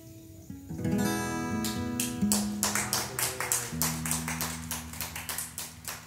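Steel-string acoustic guitar strummed in a quick, even rhythm, about four strums a second, with a chord change partway through, as the song's outro; the strumming starts about a second in after a fainter held note.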